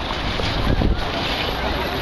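Wind buffeting the camera's microphone, a steady low rumble, with voices of people in the square faintly beneath it.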